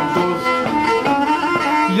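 A three-string Black Sea kemençe (Karadeniz kemençesi), bowed in a quick melody of short notes that step rapidly from one to the next, with more than one string sounding at once.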